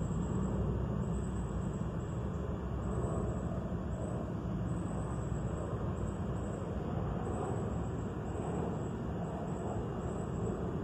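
A steady, low background rumble with no distinct events.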